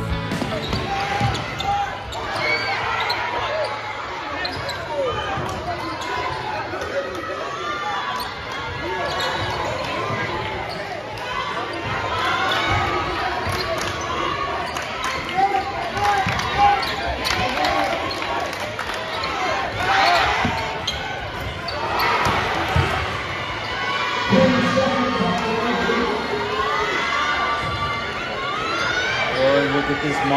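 A basketball being dribbled and bounced on a gymnasium hardwood floor during live play, with voices of players and spectators calling out throughout.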